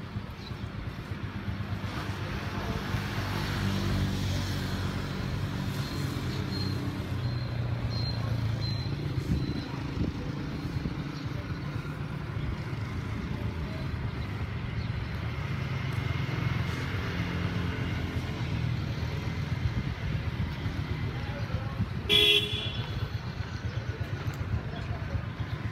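Steady low rumble of vehicle engines and traffic, with one short, loud horn toot about 22 seconds in.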